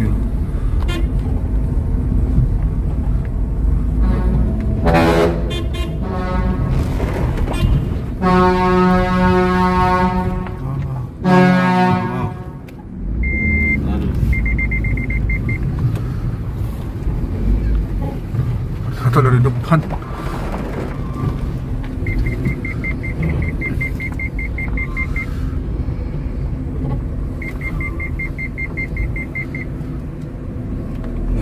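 A deep vehicle horn, most likely the oncoming truck's, sounds in the rock tunnel: a short blast, then one of about two seconds, then a short one, over steady engine rumble. It is followed by bursts of rapid high-pitched reverse-warning beeps as the car backs up to let the truck through.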